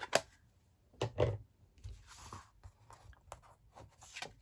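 Cardstock and a foam stamping mat being handled on a craft desk: a few light taps and a brief papery rustle and scrape as a stamped cardstock panel is lifted off the mat.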